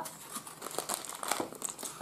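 Plastic bags of Lego pieces crinkling and the cardboard box rustling as a small Lego set is unpacked: a quick, irregular run of small crackles.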